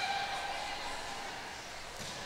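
Low background noise of a gymnasium between commentary, with no distinct event; a faint steady tone fades out within the first second.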